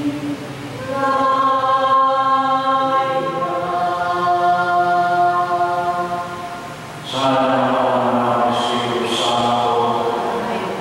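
Choir singing a slow chant in long held notes. A fuller sound of many voices comes in about seven seconds in.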